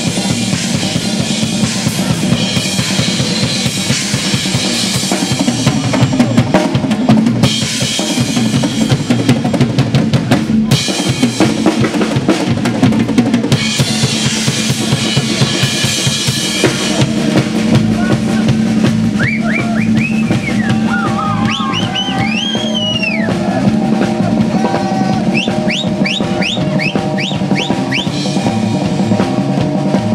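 A live band plays an instrumental passage without singing: a drum kit keeps a busy beat with kick and snare. From about two-thirds of the way in, a high instrument adds a run of quick upward-sliding notes over the groove.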